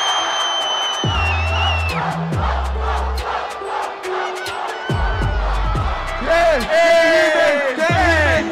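Hip-hop beat with deep bass notes playing under a crowd shouting and whooping in reaction to a rap-battle verse; a long high held cry stands out in the first two seconds, and the yelling grows louder near the end.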